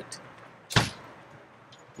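A single brief whoosh of air on the microphone, less than a second in, over a faint steady background hiss.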